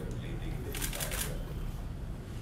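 A burst of rapid, sharp clicking lasting about half a second, about a second in, over a steady low room hum.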